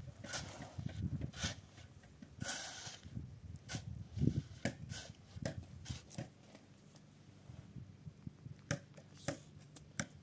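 A steel shovel scraping and digging into a heap of sand, in a run of short scrapes and knocks with one longer scrape about two and a half seconds in.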